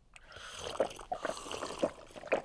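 Cartoon sound effect of a glass of water being drunk down: a rapid run of noisy gulps and slurps.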